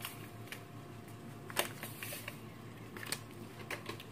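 Faint rustling of a small paper sachet of vanilla sugar being emptied over a mixing bowl, with a few light, sharp clicks, the strongest about one and a half seconds in.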